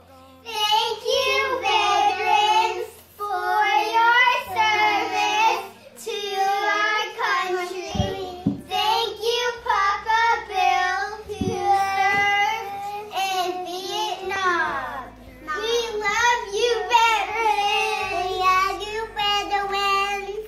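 Young girls singing together in phrases, starting about half a second in.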